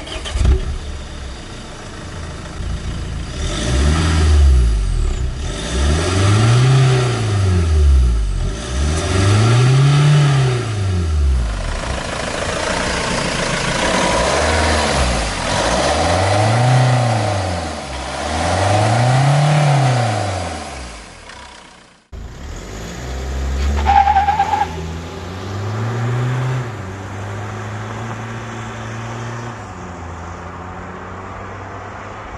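Mahindra XUV500's 2.2-litre mHawk turbodiesel revved repeatedly, the engine note rising and falling about every three seconds. After a cut about two-thirds of the way through, the engine is heard lower and steadier, with one more short rise in pitch.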